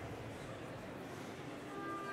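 Concert-hall interval ambience: a diffuse murmur of audience chatter, with a few scattered sustained instrument notes coming in near the end as orchestra players warm up.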